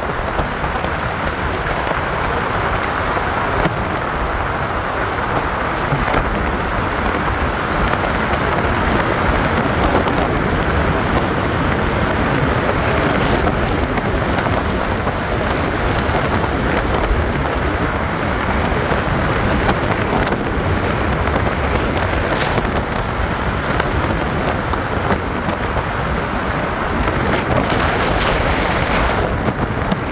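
Steady rumbling wind and road noise from a vehicle driving at speed, the airflow buffeting the microphone.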